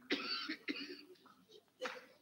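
A person coughing: two coughs in the first second, then a short sharp one near the end.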